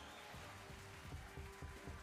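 Faint music and sound effects from an online slot game, The Hand of Midas, playing quietly under a free spin.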